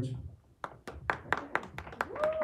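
Scattered hand clapping from a small audience, starting about half a second in: uneven sharp claps, several a second.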